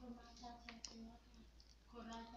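Faint, distant speech from a single voice in a large hall, with a couple of sharp clicks about three-quarters of a second in.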